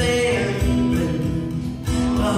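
Two acoustic guitars played with a man singing: a live folk song.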